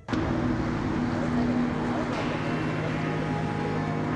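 A vehicle engine running with a steady low hum amid noisy street sound and voices.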